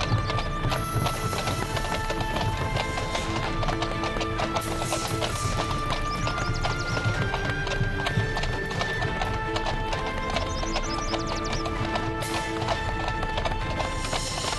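Horses' hooves clip-clopping on a dirt track under background music, a slow melody of long held notes.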